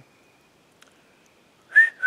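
Two short, breathy whistles near the end, the second a little lower in pitch: a man whistling to call his dog.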